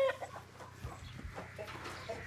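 Chickens clucking faintly in a chicken barn, with a couple of soft low thumps about a second in.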